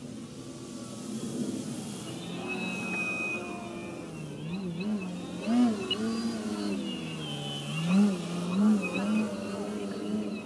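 Motor and propeller of a Skywing 55" Edge 540T radio-control aerobatic plane droning in flight. The pitch repeatedly swoops up and down. The sound grows louder as the plane comes in low, with sharp surges about halfway through and twice near the end.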